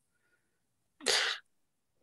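A single short burst of breath noise from a person, about a second in.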